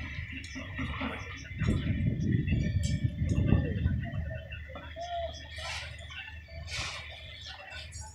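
Building-site ambience: a low rumble swells for about two seconds near the start, with scattered sharp metal clinks from the rebar work and faint distant voices.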